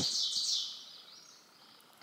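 A songbird singing a rapid run of high chirping notes that trails off about a second in.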